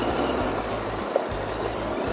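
Steady rush of wind and engine noise from a Royal Enfield Interceptor 650 riding along, under background music with a blocky bass line.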